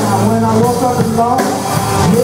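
Live rock band playing, with drum kit and guitar.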